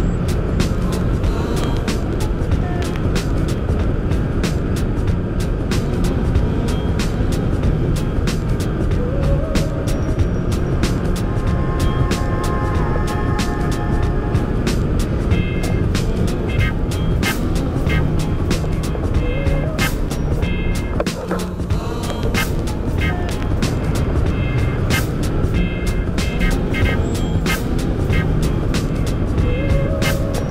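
Steady wind rushing over a hang glider-mounted camera in flight, with music laid over it; from about halfway through, short repeated high beeps come in.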